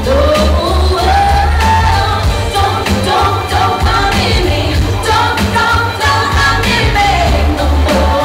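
Live pop song: a woman's amplified singing voice over loud backing music with a heavy bass and a steady drum beat.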